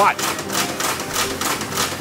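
Joseph Newman's "Big Eureka" energy machine running: a fast, even clicking, several clicks a second, over a low steady hum.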